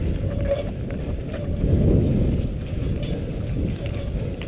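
Wind rumbling on the microphone of a camera carried by a cross-country skier gliding along a snowy trail, with the noise of skis sliding on snow and a few faint clicks.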